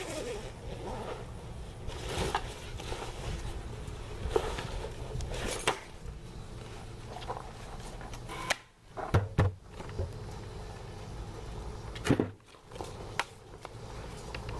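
Close rustling and handling noise, with scattered clicks and knocks and two brief drops almost to quiet in the second half.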